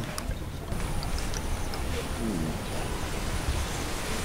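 Steady outdoor background noise, an even hiss over a low rumble, with a faint voice heard briefly about halfway through.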